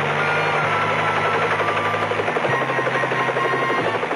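Bell 47 piston helicopter running with its rotor turning: a steady engine hum under a fast, even chop of the blades.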